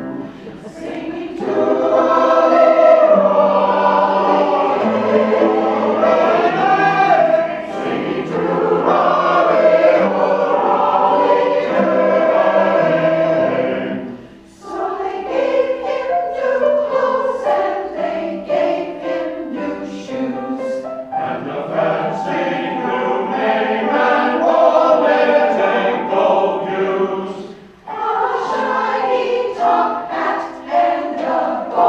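Large combined choir singing, pausing briefly between phrases about halfway through and again near the end.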